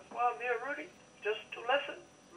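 Speech only: a voice talking over a telephone line, thin-sounding with no bass and no top end.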